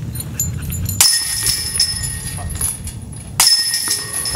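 Disc golf putts striking the chains of a metal chain basket: two metallic crashes, about a second in and near the end, each followed by a ringing jingle of the chains.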